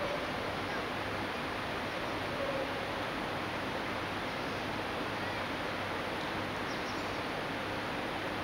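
Steady rush of water in a river lock chamber: an even hiss that neither rises nor falls. A few faint high chirps of birds come near the end.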